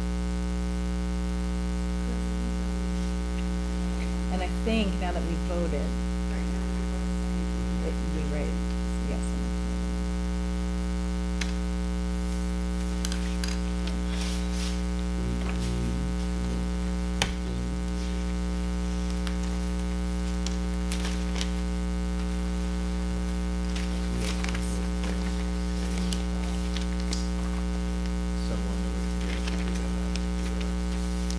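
Steady electrical mains hum with a stack of evenly spaced harmonics, with faint paper rustling and light knocks over it and one sharp click about 17 seconds in.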